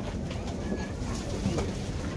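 Steady background noise of a busy outdoor market, with a faint short high tone a little under a second in.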